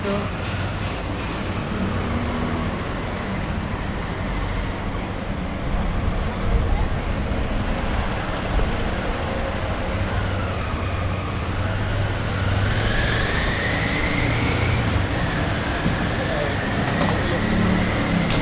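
Street traffic with engines running and the voices of passers-by. In the second half a vehicle's motor whine dips and then rises in pitch twice.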